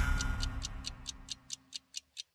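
The fading tail of a TV show's theme music with a clock-like ticking effect, about four to five sharp ticks a second, left standing as the music dies away.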